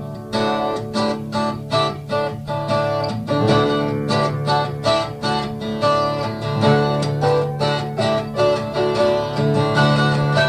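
12-string acoustic guitar strummed in a steady rhythm, about three to four strums a second.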